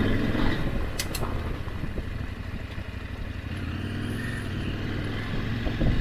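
Motorcycle engine running at a steady note while riding along a gravel road, with road noise over it. Two sharp clicks about a second in.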